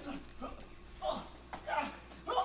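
A few short vocal cries, each falling in pitch, heard faintly.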